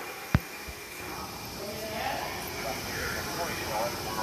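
One sharp knock about a third of a second in, over steady background noise in a fire station apparatus bay, with faint voices later on.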